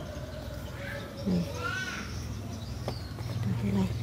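Scissors snipping once through an eggplant stem, a short click about three seconds in, over a steady low hum.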